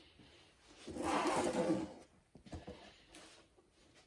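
Fine dry sand poured from a ceramic tray into a wooden sand toy box: a rustling hiss lasting about a second, followed by a couple of light knocks.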